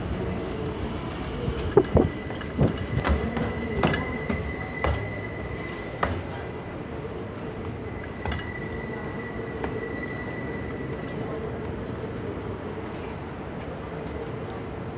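Subway train running on elevated track, a steady rumble with a run of sharp rail clacks and knocks in the first six seconds. A thin, high, steady whine is held from about three seconds in until about eleven.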